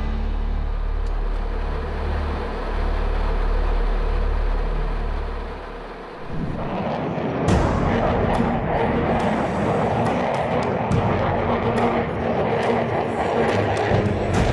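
Music with low steady drones for about six seconds; then, after a brief dip, a loud rushing jet roar with sharp cracks, an F-22 Raptor flying past at low level, laid over the music.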